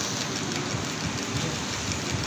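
Steady outdoor background noise, an even hiss with a fluctuating low rumble.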